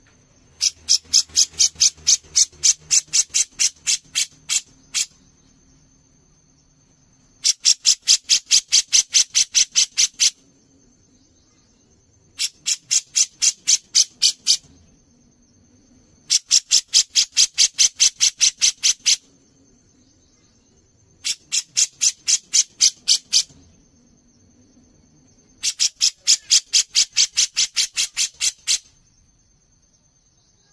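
A cucak jenggot (grey-cheeked bulbul) calling in six bursts of rapid, evenly repeated sharp notes, about five a second. Each burst lasts two to four seconds, with short pauses between them.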